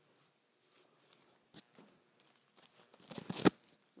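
Woody leucadendron stems crunching and crackling as they are handled. There is a single faint click about a second and a half in, then a dense burst of crunching a little after three seconds, the loudest sound.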